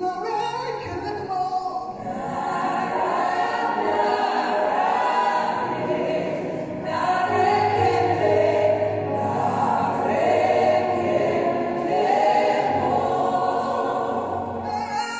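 Church choir singing a hymn of thanksgiving in parts, several voices holding long notes together.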